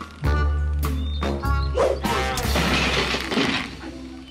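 Bouncy cartoon background music in short clipped notes, joined about halfway through by a harsh, noisy crash-like sound effect lasting about a second and a half.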